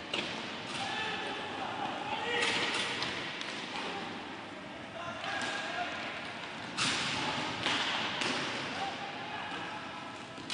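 Inline hockey game sound: players' shouts and calls over arena noise, with several sharp knocks of sticks and ball against the floor and boards.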